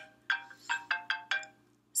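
A quick run of about six short electronic beeps at differing pitches, like a phone's or tablet's button tones as keys are pressed while trying to stop a recording. They end about a second and a half in.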